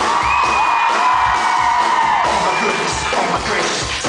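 Live pop-rock band music at a concert, a steady drum beat under long held high notes, with the audience cheering and whooping over it.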